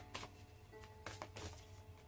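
Faint, soft background music with a few held tones, and a few light clicks.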